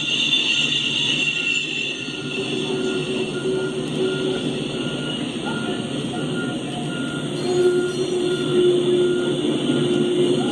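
Freight cars (tank cars, boxcars and covered hoppers) rolling past: a steady rumble of steel wheels on the rails, with a steady ringing tone over it in two stretches, first about two seconds in and again near the end.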